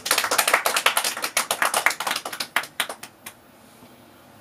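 Small audience clapping, dense at first and thinning to a few last claps that stop about three seconds in.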